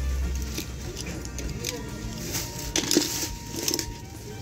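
Die-cast and plastic toy cars clicking and clattering against each other as a hand rummages through a pile of them, with a cluster of sharp clicks in the second half.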